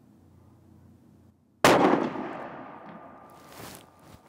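A single rifle shot from a .308 Win Sako S20 Hunter firing a 150-grain copper load, about one and a half seconds in. The report starts suddenly and rings out over about two seconds, with a short sharper noise near the end.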